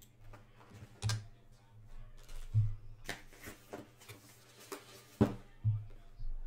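Handling noise: light clicks and knocks, about eight in six seconds at uneven spacing, some with a dull thud under them, over a faint low hum. The sharpest click comes near the end.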